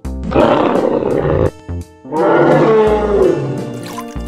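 Two roars from a dinosaur sound effect over light background music: one about a second long near the start, then a second roar in the middle that falls in pitch as it ends.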